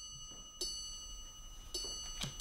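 Faint high ringing tones held steady, with a few soft ticks.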